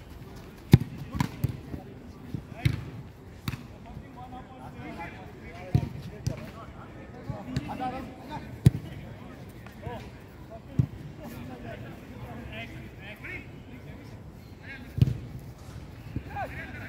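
A football being kicked on an artificial-turf pitch: about seven sharp thuds of foot striking ball at irregular intervals, the loudest near the start and about nine seconds in. Players' voices are faint in the background.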